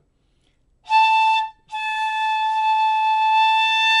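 Shinobue (Japanese bamboo transverse flute) sounding a short note about a second in, then, after a brief break, one long steady note at the same high pitch, blown firmly at full volume.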